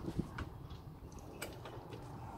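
A few faint, sharp clicks and light knocks of a metal bar being worked against the new Volvo Penta D1-20 engine and its mounting frame while it is levered into line.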